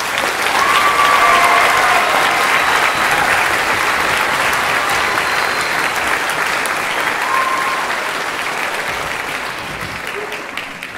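Auditorium audience applauding as an orchestral song ends. It is loudest in the first couple of seconds and slowly dies down.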